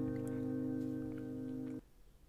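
Steel-string acoustic guitar, capoed at the first fret, with a fingerpicked chord ringing and slowly fading. It cuts off suddenly near the end.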